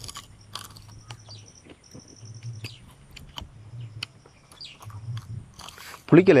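A person biting into and chewing tamarind pod pulp, with scattered crisp clicks and crunches. A low hum comes and goes alongside the chewing.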